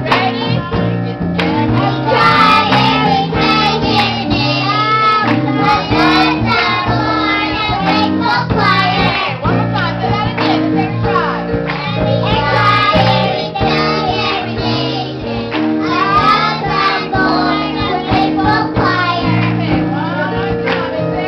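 Children's choir singing a gospel song in unison into microphones, backed by a live band with a drum kit and steady held bass notes.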